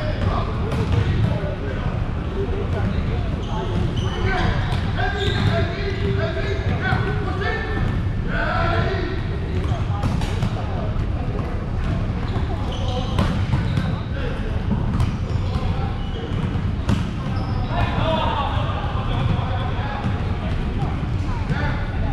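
Indoor volleyball game: the ball being struck and bouncing again and again, with players' voices calling and talking throughout. A steady low background rumble runs underneath.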